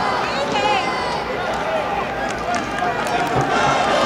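Football spectators in the stands shouting and calling out, several voices overlapping over a steady background of crowd noise.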